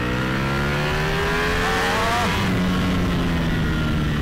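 Ducati Panigale V4S's 1103 cc V4 engine under hard acceleration, rising in pitch for about two seconds, dropping back sharply, then pulling up again.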